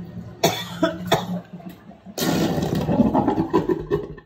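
Bathroom sink water draining: two short gulps early on, then a longer stretch of weird sucky, gurgling sounds in the second half.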